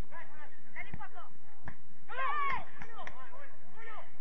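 Footballers shouting short calls across the pitch during play, the loudest call a little past two seconds in, with a few sharp knocks among the shouts.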